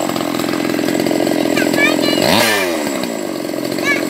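Two-stroke chainsaw engine idling steadily, with a brief shift in pitch a little past halfway.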